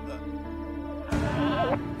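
Soft background music, then about a second in a loud, quavering, bleat-like wail from a man's voice lasting under a second.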